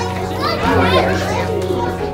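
Young children's voices chattering and calling out over music with a held bass line.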